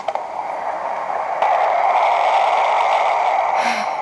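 A baby monitor's built-in soothing sound playing through its small speaker: a steady rushing noise with no tune or beat, stepping up in level about a second and a half in.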